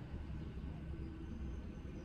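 Quiet, steady low rumble of a car cabin's background, with no distinct events.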